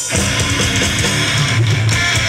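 A live band comes in loudly right at the start, with electric guitars and bass playing together.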